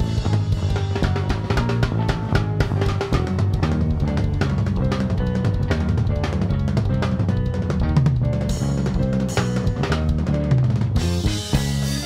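Live band music with the drum kit to the fore: fast, busy snare and bass-drum playing over low bass notes. A brighter cymbal wash comes in near the end.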